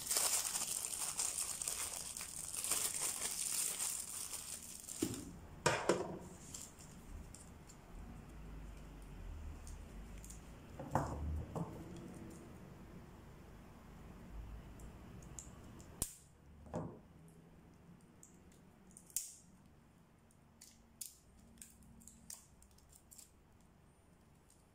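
Clear plastic packaging crinkling as it is pulled off and handled, dense for the first five seconds. It is followed by a few soft knocks and scattered light clicks as the parts are handled and set down.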